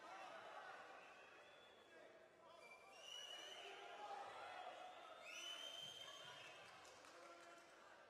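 Faint, indistinct voices of people in the arena, with two longer, higher-pitched calls about three and five seconds in.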